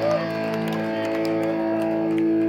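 Live punk rock band holding out a single sustained electric guitar chord, ringing steadily through the amplifiers: the song's closing chord being let ring.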